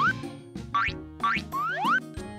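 Cartoon boing sound effects: three quick rising pitch sweeps, each well under half a second and about 0.8 s apart, over children's background music.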